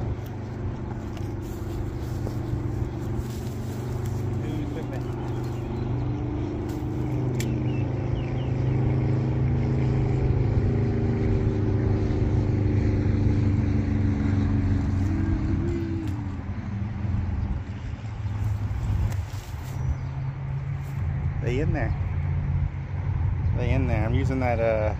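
An engine running with a steady low hum whose pitch drifts slightly up and down, fading about two-thirds of the way through.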